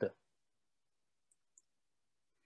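Near silence with two faint, sharp clicks a quarter second apart, about a second and a half in. They are the computer clicks that advance the presentation slide.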